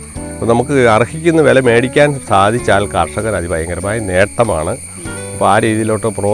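A person's voice, with a wavering, melodic pitch, over sustained background music.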